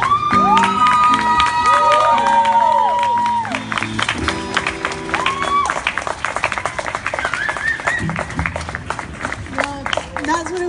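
Acoustic guitar sounding its final chords while a crowd applauds and cheers, with long high whoops over the first few seconds. The guitar stops about six seconds in and the clapping carries on.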